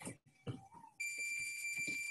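A steady, high-pitched electronic beep starts about a second in and holds for about a second and a half. Before it come a few soft thuds of feet landing from jumping jacks on a gym mat.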